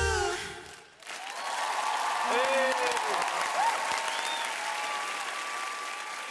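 A studio audience applauds and cheers, with shouted whoops, starting about a second in, just after a duet's last sung note fades out.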